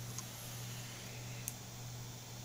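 Quiet room tone with a steady low hum, and two faint clicks during a long draw on a vape pen: one just after the start and one about a second and a half in.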